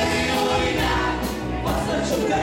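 A live pop band playing a song, with a woman singing lead over drums, electric guitar and keyboard, recorded in a bar room.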